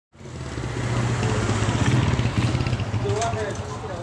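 A small motorcycle engine running as the bike rides past close by. It rises quickly just after the start, is loudest midway, and eases off toward the end as it moves away.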